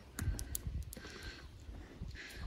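Faint footsteps and handling noise from a hand-held phone camera being carried, with a few light clicks in the first second.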